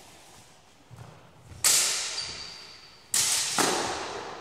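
Steel longswords clashing blade on blade. A sharp strike about a second and a half in rings on with a thin, steady high tone, then two more clashes follow in quick succession about a second and a half later, each dying away slowly in the large hall.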